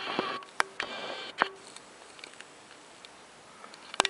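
Handling noise from a cardboard booklet and an open metal tin being moved: rustling with a few sharp taps and clicks in the first second and a half, then only faint room noise.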